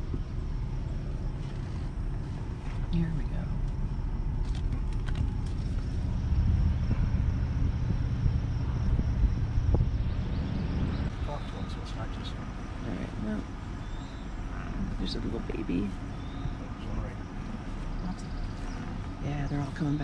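Pickup truck's engine and tyre rumble heard from inside the cab while it rolls slowly along the road, the side window open. The rumble is steady, a little louder in the middle.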